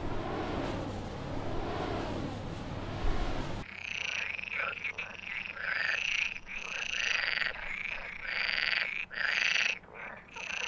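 A steady rushing noise of falling water stops abruptly about four seconds in. It gives way to frogs croaking in a rapid run of short, repeated calls.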